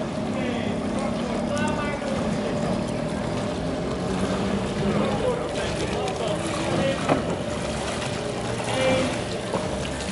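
Outdoor city ambience: a steady engine hum under a noisy wash, with brief snatches of distant voices.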